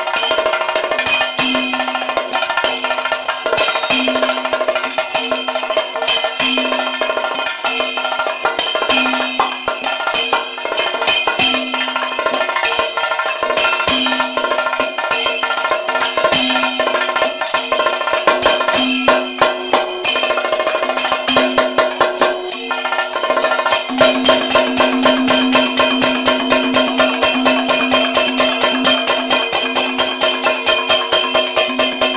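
Kerala ritual drumming: a chenda drum struck with a stick and a second, hand-played drum over steady ringing tones, in a continuous beat that grows faster and denser about four-fifths of the way through.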